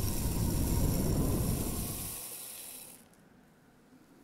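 Logo-animation sound effect: a loud hiss over a deep low rumble. The rumble ends a little after two seconds in and the hiss cuts off about three seconds in, leaving faint noise.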